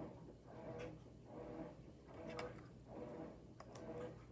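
Faint handling of small craft pieces such as buttons on a table: soft rustling with a few light clicks, two of them close together near the end.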